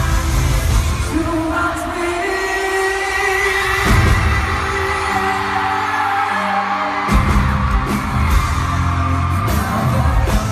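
Live pop music, loud, with a male singer and his band. The bass and drums drop away for a few seconds and come back in fully about seven seconds in.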